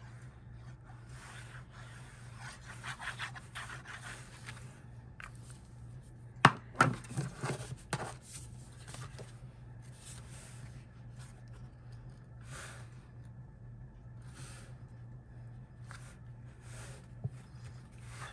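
Cardstock being handled and pressed together on a craft mat: faint rubbing and scraping of paper, with a sharp knock about six and a half seconds in and a few softer taps after it. A steady low hum runs underneath.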